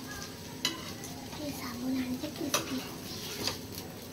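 A faint sizzling hiss of frying, with three sharp clicks of a utensil against a steel plate.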